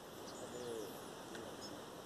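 Quiet open-field ambience with faint, distant bird calls: a short low call about half a second in and thin high chirps.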